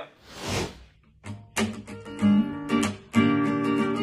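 Acoustic guitar starting a song after a brief soft rush of noise: a few separate plucked notes and chords about a second in, settling into a steady run of picked chords near the end.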